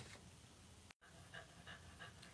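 Faint dog panting: quick breaths about three a second, starting after a brief dropout about halfway through.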